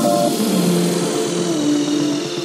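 Brazilian bass electronic dance track in a break without drum hits: held synth notes that slide up and down in pitch.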